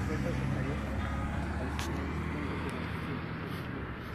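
A motor vehicle's engine running close by: a low, steady hum that eases off after about two and a half seconds, with faint voices of people talking underneath.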